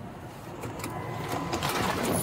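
Rustling and handling noise on a chest-worn police body camera as the wearer turns in the driver's seat of a pickup truck to get out, with a faint thin tone briefly about halfway through.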